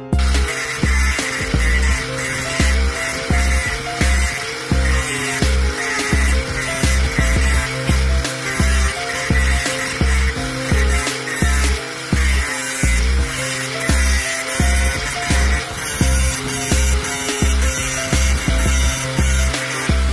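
Background music with a steady bass beat, over the continuous high whine of an angle grinder's cut-off disc cutting through a steel bar.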